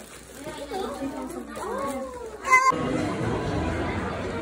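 Young children's voices babbling and chattering, with a short, loud, high-pitched squeal about two and a half seconds in. Then the sound cuts abruptly to the steady hubbub of voices in a busy restaurant.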